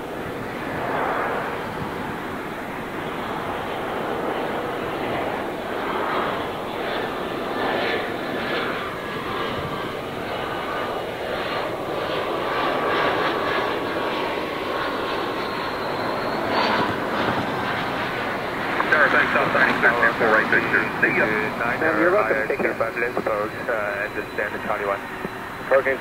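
Turbofan engines of a twin-engine regional jet on landing approach, a steady jet noise with a thin whine that slides down in pitch about midway as it passes. Air traffic control radio voices come in over it for the last several seconds.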